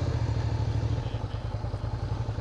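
Suzuki SV650S motorcycle's V-twin engine running at low revs with a low, steady note as the bike rolls slowly through a turn.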